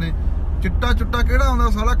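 A man talking inside a car cabin over a steady low rumble from the vehicle. His voice pauses briefly and resumes about half a second in.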